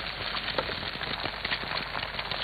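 Sausage pieces and eggs frying in a pan for an omelette: a steady sizzle with dense crackling.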